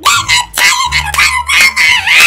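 A man screeching and wailing in a high, strained voice in several loud bursts, a mock cry of pain as if being whipped.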